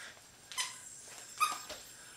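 A squeaky rubber dog toy being stepped on underfoot, giving two short high squeaks about a second apart.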